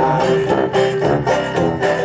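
Live banjo band playing an instrumental bar of an upbeat folk song: banjos strumming in a steady rhythm over a sousaphone bass line.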